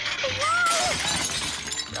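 A crash of dishes smashing, lasting about a second and a half: crockery breaking all at once, the way plates are smashed at a Greek wedding.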